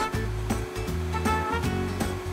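Vacuum cleaner running with a steady whirring hiss, under background music.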